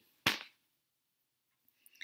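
A single short, sharp knock about a quarter of a second in.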